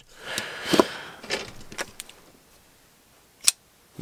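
A folding knife handled in the hands: rustle and several light metal clicks over the first two seconds, then near silence and one sharp click about three and a half seconds in.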